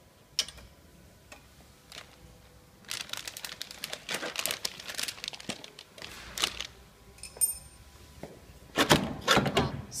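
Metal clicks, rattles and knocks of hands working the cutter blade assembly of a vertical form-fill-seal packing machine, with rustling from about three seconds in. A louder clatter comes near the end.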